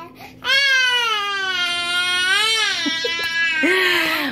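A toddler crying: one long wail starting about half a second in and lasting over two seconds, its pitch rising and then falling, followed by a shorter voiced sound near the end.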